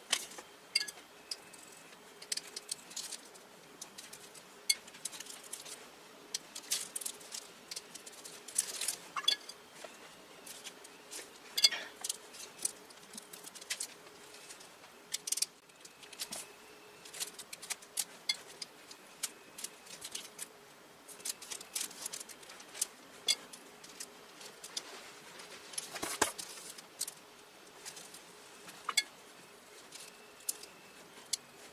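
Irregular small taps, clicks and rustles of hands and a paintbrush working gouache paint onto a strip of cotton fabric on a plastic sheet, over a faint steady hum.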